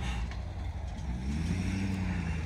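Pickup truck engine pulling a flatbed trailer loaded with round hay bales: a steady low drone whose pitch rises slightly about a second in as it picks up revs.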